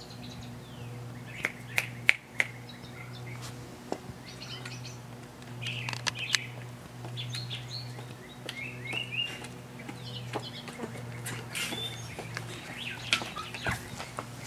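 Songbirds chirping in the surrounding trees, with scattered sharp clicks of high-heeled footsteps on a concrete walk, over a steady low hum.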